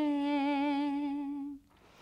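A woman's unaccompanied singing voice holds one long note that settles slightly lower at the start. The note fades out about one and a half seconds in, near the end of a line of a Haryanvi Ramayan song.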